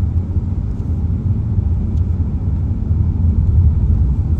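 Steady low rumble of a car's engine and tyres on the road, heard from inside the cabin while driving at a constant speed.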